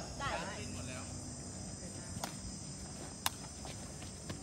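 Steady high-pitched chirring of crickets, with a voice briefly at the start and two sharp knocks, about two and three seconds in, the second the louder.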